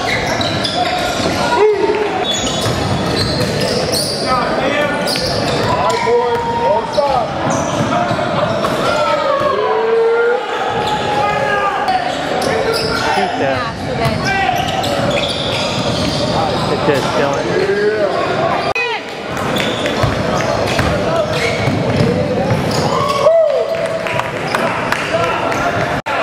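Basketball game sounds in a gym: a ball bouncing on the hardwood floor, sneakers squeaking, and players' and spectators' voices and shouts, all echoing in the large hall.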